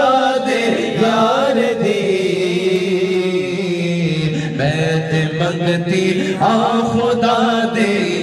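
A man singing a Punjabi naat (kalaam) into a microphone, unaccompanied, drawing out long ornamented notes that glide up and down, over a steady low drone.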